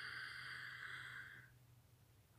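A woman's slow, deep in-breath through the nose, a steady hiss that stops about one and a half seconds in.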